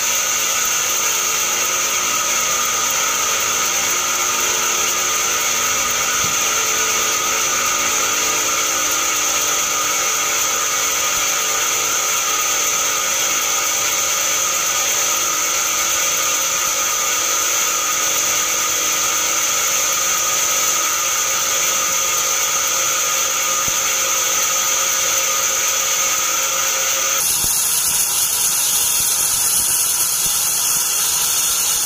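Band sawmill running steadily: a constant mechanical drone with a high whine from the spinning blade and drive, with no cut into the wood heard. Near the end the sound changes abruptly.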